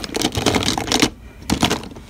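Makeup pencils and plastic tubes clattering as a hand rummages through them in a drawer: a quick run of small clicks and knocks through the first second, then another brief cluster.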